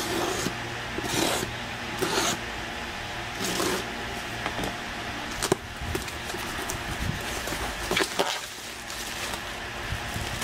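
A cardboard package being opened by hand: a series of short scraping and rustling strokes of cardboard and packing material, with a couple of sharp clicks.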